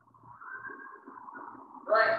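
Marker pen squeaking and rubbing across a whiteboard as a line of text is written, then a short loud spoken word near the end.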